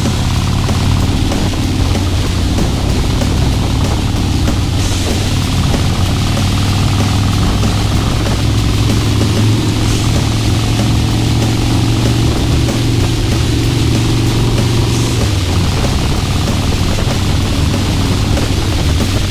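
2005 Harley-Davidson Heritage Softail's V-twin with a Vance & Hines exhaust running steadily at highway cruising speed, with wind rushing over the microphone.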